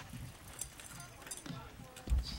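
Faint, indistinct talking from a few people, with a few light clicks.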